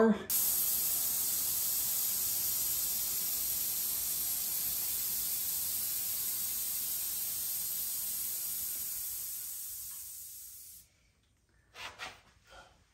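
Air ride suspension airing out: a steady hiss of compressed air venting from the air springs, fading slowly and cutting off after about eleven seconds.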